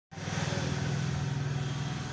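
Steady low hum over a wash of background noise.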